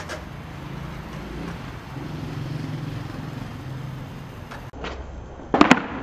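Skateboard wheels rolling on concrete with a low steady rumble, then a quick cluster of loud sharp clacks near the end as the board hits the pavement after a missed flip trick and lands upside down, the skater's feet coming down beside it.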